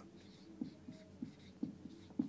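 Marker pen writing on a whiteboard: a series of faint short strokes, with a brief squeak about halfway through.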